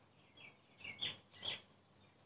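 Faint bird chirping: a few short, high chirps, the two loudest about a second in and half a second later.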